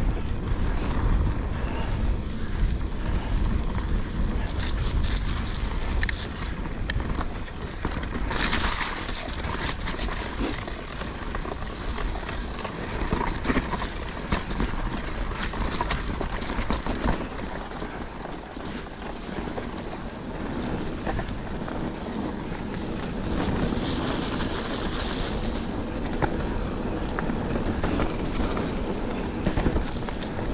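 Full-suspension mountain bike ridden over a rough, muddy forest trail: tyres rolling over dirt and stones, with the chain and frame rattling over bumps. Wind buffets the action camera's microphone.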